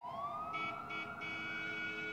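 Distant siren wailing, its pitch rising slowly, over faint city background noise, with a second, brighter tone sounding on and off above it.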